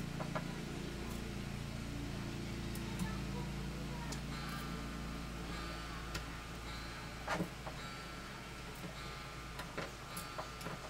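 Soft clicks and sticky smacks of a rubber suction cup pressed onto and pulled off a glue-covered guitar top, the loudest about seven seconds in, over a steady low room hum. A faint high whine joins the hum about four seconds in.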